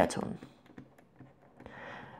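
Light clicks and taps of a pen stylus on a drawing tablet's plastic surface while a word is being handwritten.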